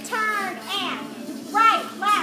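Children's voices shouting high and loud over recorded dance music playing in a large hall.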